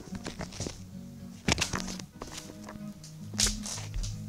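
Background music with a steady low line, under a few sharp knocks and brushing sounds from the recording device being handled and moved; the loudest knock comes about three and a half seconds in.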